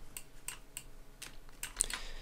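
Faint, irregular clicking from computer input while drawing on screen, with one slightly louder click near the end.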